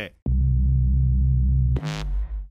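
Electronic TV promo sound design: a short rising blip, then a deep, steady synthesizer bass tone, cut off near the end by a bright whoosh as the channel ident starts.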